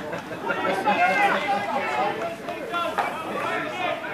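Several people talking over one another: the chatter of spectators standing by the pitch, with no single voice clear.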